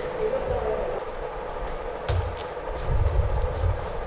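Irregular low thumps and rumble of a cluster of microphones being bumped and handled on their stands.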